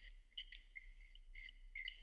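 Near silence: room tone with a faint low hum and scattered faint, brief high chirps.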